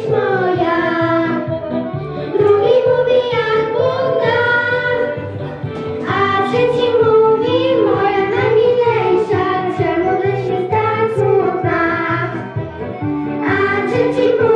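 A group of young girls singing a song together into handheld microphones, with a steady low accompaniment underneath.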